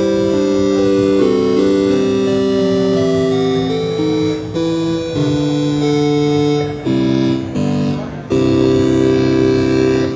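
Kanawha Long Division Eurorack module, a divide-down, diode-keyed polyphonic organ, playing sustained chords with a plain, basic organ tone through a studio monitor. The chords change every second or so, with brief breaks about seven and eight seconds in.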